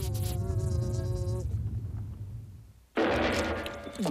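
Cartoon sound effects: a held buzzing tone over a low rumble, fading away, then a sudden loud burst of noise about three seconds in.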